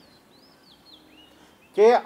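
Faint bird chirps, a few short, high calls that rise and fall in pitch, over a quiet outdoor background. A man's amplified voice starts up again near the end.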